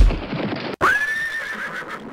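A horse whinnying as a sound effect: one wavering call about a second long that jumps up sharply in pitch and sags a little at its end. Before it comes a heavy thump with hooves clip-clopping.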